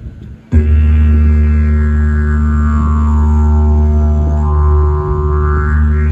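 Didgeridoo playing its basic drone: one steady low note that starts suddenly about half a second in, its upper overtones slowly sliding down and back up again.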